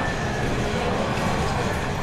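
Steady background din of a busy exhibition hall, a low, even rumble with no clear single source.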